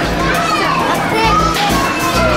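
Children's voices and play chatter in a busy play area, over background music with steady bass notes.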